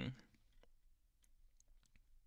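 Near silence, with a few faint, scattered clicks after a man's voice trails off at the very start.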